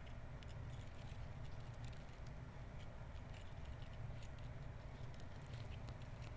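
Footsteps crunching over a beach littered with shells and dried seagrass wrack, heard as many small, scattered clicks and ticks, over a steady low rumble.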